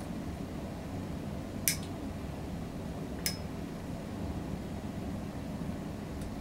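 Steel toenail nippers snipping a toenail: two sharp clicks about a second and a half apart, the second with a brief metallic ring, over a steady room hum.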